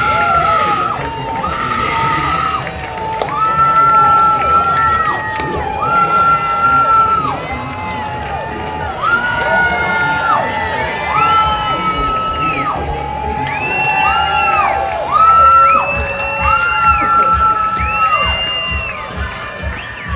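Ballpark music playing between innings: a tune of long, steady held notes over crowd noise and cheering.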